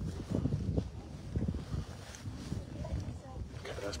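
Outdoor wind buffeting the microphone as an irregular low rumble, with faint voices in the background and a man's voice starting at the very end.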